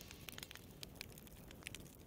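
Faint campfire crackling, a few scattered small pops over a quiet hiss.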